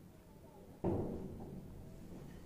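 A single dull thump about a second in, from tableware knocking against the table as a piece of sweet is moved onto a serving tray, fading quickly.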